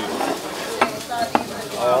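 Tableware clinking on a dining table: two sharp clicks about half a second apart, over a steady hiss.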